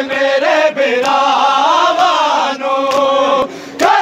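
A group of men chanting a Punjabi nauha (Muharram lament) together in a sustained, wavering melodic line, with a few sharp slaps of hands beating on chests (matam) cutting through. The chant briefly drops away near the end before picking up again.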